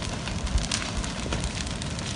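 A large structure fire burning: the glowing timber roof frame of a party hall crackling and popping continuously over a steady low rumble of flames.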